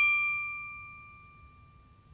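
A bright metallic chime, struck once just before and left to ring, a few clear tones fading steadily away over about a second and a half: the sound of an animated logo intro.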